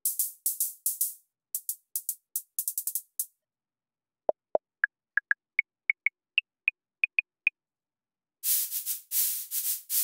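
Synthesized percussion from the MRB Tiny Voice synth module. First come quick, crisp hi-hat hits. After a short gap there is a run of short, clave-like pitched clicks that step upward in pitch, and near the end come longer hissing swishes from a sand-block patch.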